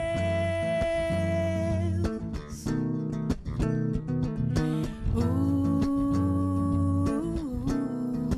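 A woman's voice holding two long sung notes, one at the start and one in the second half, over an electric bass guitar played with plucked chords and melody.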